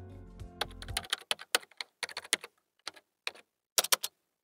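Computer keyboard typing: a quick, irregular run of keystroke clicks. It comes after the end of a short music jingle in the first second.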